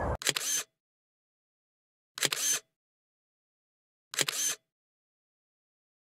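A camera shutter firing three times, about two seconds apart, each time a short quick run of clicks, with dead silence between.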